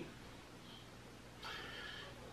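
Near silence: quiet room tone in a pause between speech, with a faint breathy sound starting about three-quarters of the way through.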